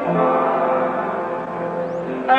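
Hymn being sung in church with accompaniment, the voices holding long, steady notes.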